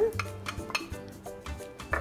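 A wooden spoon stirring and scraping grilled corn kernels around a nonstick skillet of sautéing garlic and shallots, with scattered clicks and scrapes. Light background music underneath.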